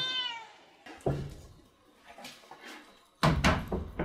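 A meow falling in pitch fades out in the first half-second. Then come wooden knocks and thumps: one about a second in, and a louder cluster near the end as the wooden grain dispenser is set against the wall and hung.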